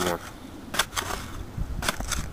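A rod jabbed into the packed dirt of a fire ant mound: a few sharp knocks, two about a second in and another near the end.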